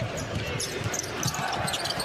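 A basketball being dribbled on a hardwood court, a quick irregular series of bounces, over the steady noise of an arena crowd.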